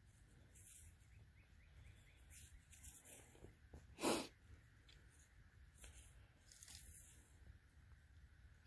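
Near silence: faint outdoor background, with one brief noise about four seconds in.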